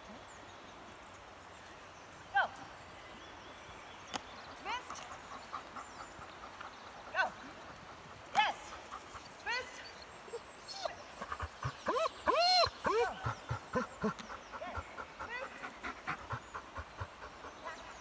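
A small dog giving short, high barks and yelps now and then, then a quick run of excited yips from about eleven seconds in, loudest at around twelve to thirteen seconds, while it works a disc-dog routine.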